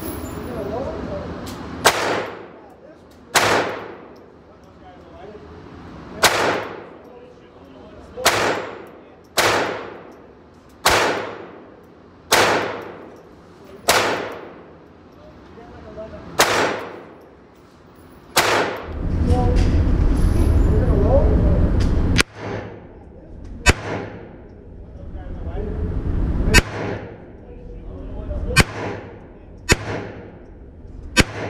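Ruger Mark IV .22 LR pistol firing about fifteen single shots at an uneven pace, each one echoing in the indoor range. A low rumble fills a few seconds past the middle.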